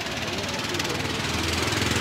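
A small vehicle engine running on the street below, with a fast even putter, growing gradually louder.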